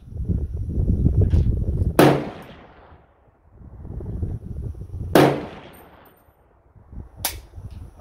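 Three single shots from a Ruger SFAR .308 semi-automatic rifle, about three seconds and then two seconds apart, each a sharp crack with a short echo trailing after it.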